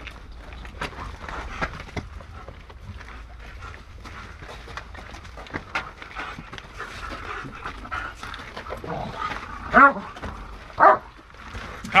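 Police dog panting and moving as it searches, with light footsteps and gear rattle, then two short, loud barks about ten seconds in as it reaches the hidden decoy.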